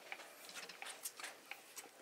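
Faint, irregular clicks and rustles of hands working a hand-cranked meat grinder used as a sausage stuffer, pressing meat down the hopper and into a soppressata casing held on the horn.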